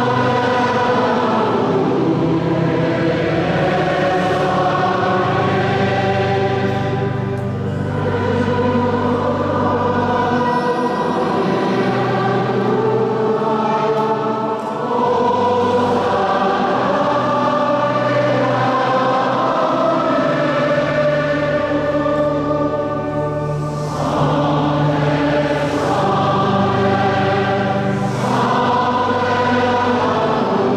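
Choir singing liturgical music in slow, held phrases that pause briefly every seven to nine seconds, over sustained low notes, in the echo of a large cathedral.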